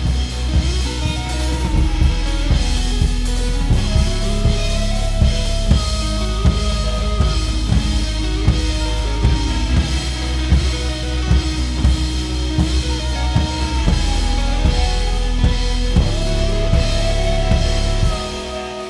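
Live band music: a drum kit keeps a steady beat of kick, snare and rimshots under a sustained low bass, with melodic lines that hold notes and glide between them.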